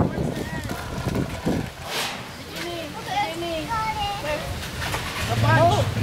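Children's voices chattering and calling, with one sharp knock about two seconds in and a low steady hum starting near the end.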